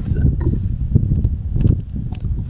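Small metal guardian bell, a gorilla-head bell hung on a zip tie under a motorcycle's frame, ringing a few quick times as a finger flicks it, starting just past halfway. A steady low rumble runs underneath.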